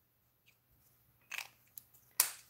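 Mostly near silence, broken in the second half by a short scuff and a small click as an alcohol marker and its cap are handled and put down.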